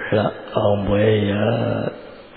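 A Buddhist monk's voice chanting on one steady low pitch: a short syllable, then a long drawn-out phrase that stops just before the end.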